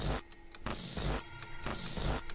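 Electronic glitch sound design: stuttering bursts of digital noise that cut in and out abruptly, over low thumps.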